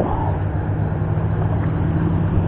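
A steady low hum over the rush of river water.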